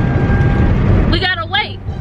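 Steady road and engine noise inside a moving car's cabin, loud and low. After about a second a short burst of voice cuts in.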